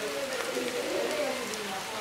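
Steady rain falling, an even hiss with scattered drops, with a soft wordless voice under it.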